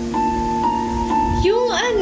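Background piano music with slow, held chords, a new note sounding every half second or so. A woman's voice comes in over it near the end.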